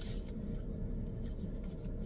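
Steady low hum of a car cabin, from the running engine or air conditioning, with a faint steady tone in it.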